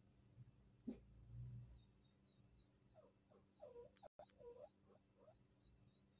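Near silence, with a few faint whimpering cries from an animal in the middle, over a low, steady hum.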